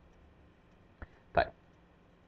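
Faint room hiss, broken about a second in by a small click and then one short spoken word, "tayyib" ("okay").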